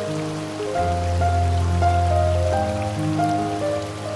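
Slow, calm piano music over a steady hiss of falling water from a waterfall, with a deep bass note held from about a second in until past the middle.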